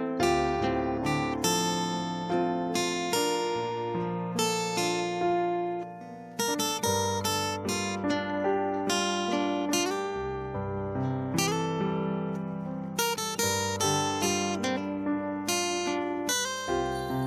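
Instrumental intro of a worship song: acoustic guitar strummed and picked over a slow-changing bass line, with keys, no singing yet. The music briefly drops away about six seconds in.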